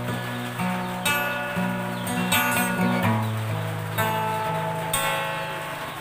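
Acoustic guitar played by hand: chords and single notes struck roughly once a second, ringing on over held low bass notes.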